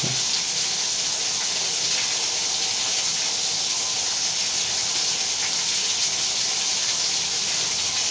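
Water running steadily with a hiss from a dismantled stop valve left open to drain, because the water supply cannot be shut off.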